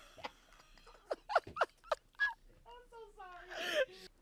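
Quiet laughter from women: a few short laughs, then a drawn-out vocal sound that wavers in pitch for over a second near the end.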